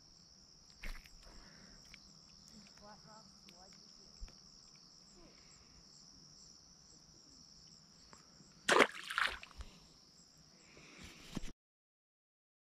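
Steady high-pitched chorus of insects at dusk. A brief loud splash in the water comes about nine seconds in, and all sound stops just before the end.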